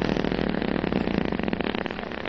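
A long fart sound effect: a rapid, raspy buzz held at a steady level throughout.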